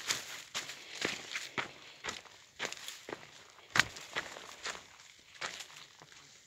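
Footsteps crunching through dry grass and leaf litter at about two steps a second, with one sharper crunch near the middle.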